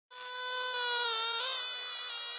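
A mosquito's high wing whine, steady in pitch. It fades in at the start and wavers slightly about a second in.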